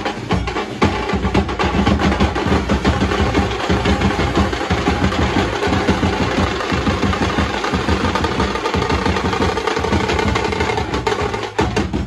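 Street procession band playing: many stick-beaten drums keep up a fast, dense rhythm, with trumpets sounding over them.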